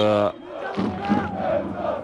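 Football supporters in the stands chanting together, a wavering mass of voices.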